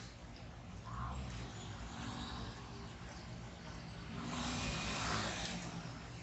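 Outdoor city street ambience: a steady low hum of traffic and surroundings, with a short click at the very start and a broad swell of noise about four seconds in that fades a second and a half later.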